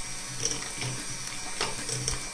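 Electric hand mixer running with its twin beaters in thin pancake batter in a stainless steel pot: a steady motor hum with a few sharp clicks, as the batter is beaten smooth and free of lumps.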